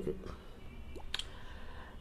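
A pause in a man's talk: faint background hiss with a couple of small mouth clicks about a second in.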